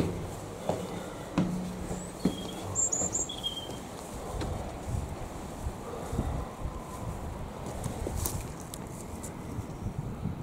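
Footsteps on a hard surface, a few separate knocking steps in the first couple of seconds and lighter irregular steps after, over a low rumble of outdoor background. A few short high chirps sound about three seconds in.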